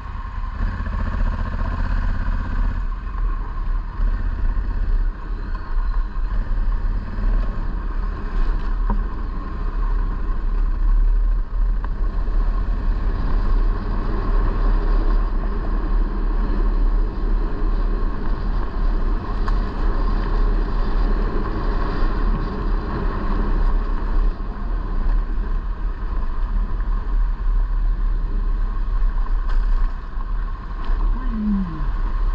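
A motor vehicle running steadily on the move, with a heavy low rumble throughout.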